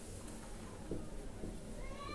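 Marker writing on a whiteboard: a faint tap about a second in, then a high-pitched squeak of the marker tip starting near the end.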